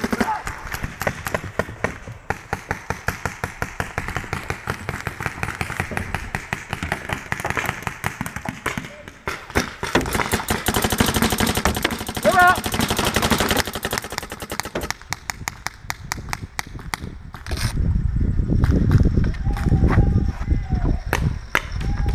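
Paintball markers firing in rapid strings of shots, fastest and densest from about ten to fourteen seconds in.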